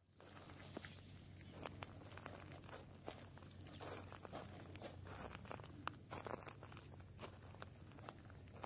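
Faint footsteps crunching on dry gravel, irregular short crunches as a person steps about, with a steady high-pitched buzz throughout.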